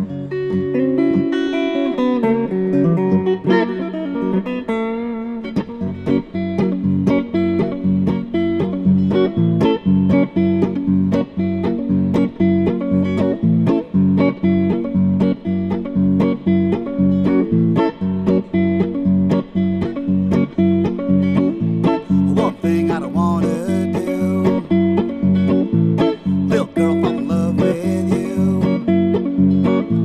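Hollow-body archtop electric guitar played solo, with no singing: loose picked notes at first, then a steady, driving rhythm of picked strokes from a few seconds in.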